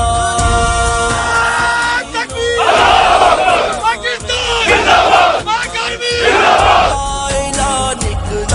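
A song's backing music with long held notes, then a large group of men shouting in unison three times, each shout about a second long, before the music carries on.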